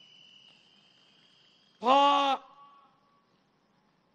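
Mostly a pause in amplified speech: a faint steady high tone, then about two seconds in a man says one drawn-out word into a microphone over a PA system, with a short echo trailing after it.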